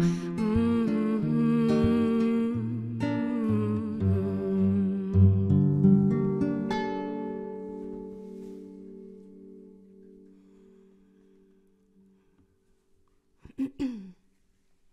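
A woman hums a melody over fingerpicked acoustic guitar. The song closes on a held guitar chord that rings and fades away over several seconds. A brief burst of handling knocks comes near the end.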